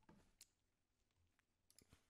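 Near silence with two faint clicks, one just under half a second in and one near the end, from a computer mouse being clicked to resume video playback.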